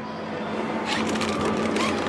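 Steady mechanical hum and hiss of a convenience store's open refrigerated display case. From about one second in there is a light crinkling of plastic wrap.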